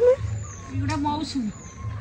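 A woman's voice speaking softly in the middle, with faint high, short falling chirps near the start and about a second in.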